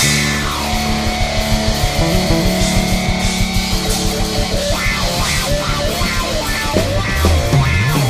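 Live electric blues-rock trio playing instrumentally: a Stratocaster-style electric guitar leads over bass guitar and drum kit. The guitar holds a long note through the middle, then plays quicker runs near the end while the bass slides underneath.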